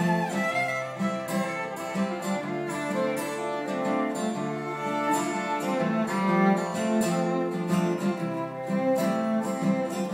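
Fiddle bowing a melody over a strummed acoustic guitar in an instrumental break, with no singing.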